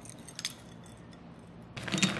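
A couple of faint clicks, then near the end a hand reaching into a footed cut-glass bowl sets off a jangling clinking against the glass.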